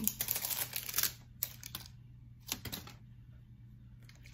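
Handling noise of a plastic setting-spray bottle close to the microphone: a quick flurry of clicks and rustles for about the first second, then a few separate clicks.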